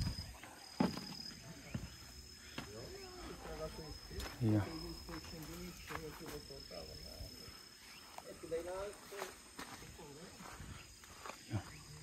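Faint voices talking in the background, with scattered light clicks and knocks of handling and a thin, steady high-pitched whine throughout.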